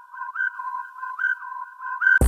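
Electronic whistle-like tone in the soundtrack, warbling back and forth between a lower and a higher note with short slides between them, about two changes a second.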